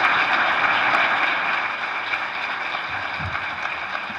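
Audience applauding, loudest at the start and easing slightly toward the end.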